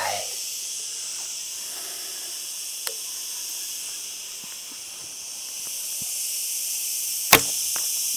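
A single sharp bow shot about seven seconds in, the string of an AF Archery Jebe Gen 2 laminated Mongolian Yuan-style bow snapping forward on release, with a faint click about three seconds in. A steady high insect chorus runs underneath.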